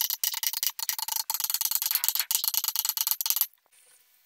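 Rapid metallic clicking of a ratchet wrench being worked on a loader gearbox shaft fitting, stopping suddenly about three and a half seconds in.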